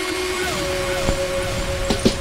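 A gap in reggae played from vinyl records: the track cuts off at the start, leaving a low rumble and one faint held tone that slides down slightly and then holds steady.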